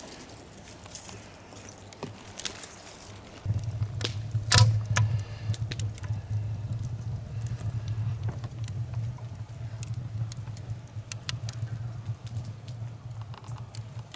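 A small wood fire of shavings and kindling crackling, with scattered sharp pops. The loudest pop comes about four and a half seconds in, over a steady low rumble that begins about three and a half seconds in.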